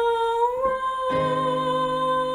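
A soprano voice holding one long note, which bends slightly upward. Lower accompaniment notes come in under it about a second in.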